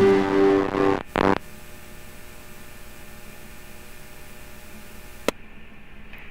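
Strummed guitar music from a WAV file, heard through an SDR receiving the Raspberry Pi's FM transmission, ends about a second in with a short burst of noise. After that the receiver gives a steady low hum and hiss from the carrier with no audio on it, and there is a single sharp click near the end.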